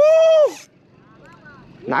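A man's loud, excited shout, high-pitched and held for about half a second, then quiet with a faint short call from a second voice.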